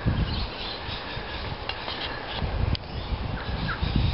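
Outdoor farm ambience: faint bird chirps over a steady low rumble, with two sharp clicks about a second apart in the middle.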